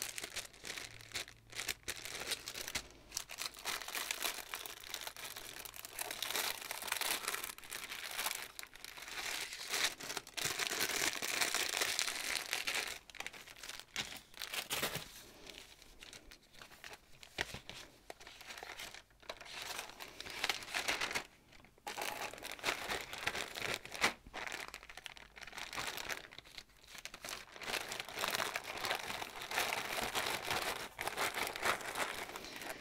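Clear plastic zip-lock bags of embroidery floss being handled and rummaged through, crinkling almost without a break and briefly pausing about two-thirds of the way in.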